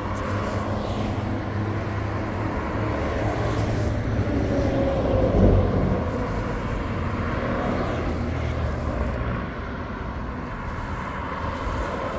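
Road traffic on a highway: vehicles passing, the loudest one swelling and passing about five seconds in, over a low engine hum that drops away about nine seconds in.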